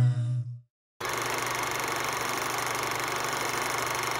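A choir's held chord fades out in the first half-second, then there is a brief dead silence. About a second in, a steady mechanical whirring noise with a low hum and a fast, even flutter begins: an end-title sound effect.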